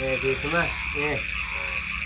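Frogs calling in a steady night chorus, with a few short voice sounds in the first second.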